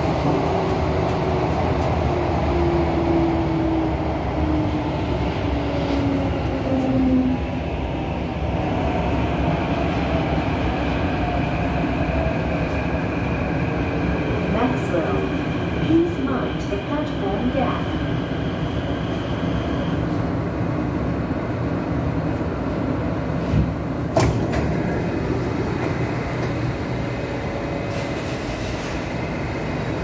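Kawasaki–CRRC Sifang CT251 metro train heard from inside the car as it brakes into a station: steady running rumble under a motor whine that falls steadily in pitch as the train slows. A higher tone cuts off about two-thirds of the way through as the train comes to a stop, and there are a few sharp clicks.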